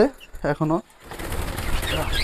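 Pet budgerigars and lovebirds taking flight in an aviary: a rush of wing flapping that builds from about a second in, with a few faint chirps.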